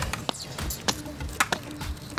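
A few light clicks and taps from nylon straps and buckles being handled on a metal go-kart frame, over faint background music.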